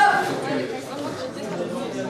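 Indistinct voices and chatter echoing in a large hall, with a brief, loud, high-pitched call right at the start.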